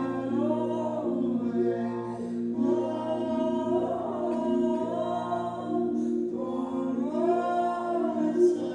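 A woman singing slow, long-held notes that glide in pitch, with short breaths between phrases, over a guitar accompaniment that holds steady low tones.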